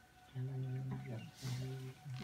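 Cello bowing two long low notes at the same pitch, with a short break between them, and a brief breathy hiss about one and a half seconds in.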